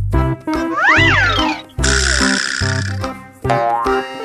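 Upbeat children's background music with cartoon sound effects: a tone that slides up and back down about a second in, then a hissing swish lasting about a second.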